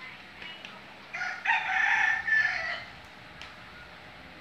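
A rooster crowing once: a single long call of about a second and a half, starting about a second in.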